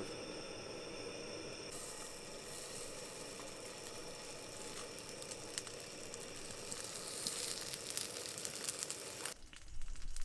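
Slabs of pork belly sizzling in hot fat in a pot on a gas burner, with scattered crackles. The sizzle gets louder about two seconds in and stops suddenly near the end.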